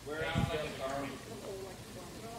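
Voices calling out from the room, faint and away from the microphone, as in congregation members answering aloud. A low thump about half a second in.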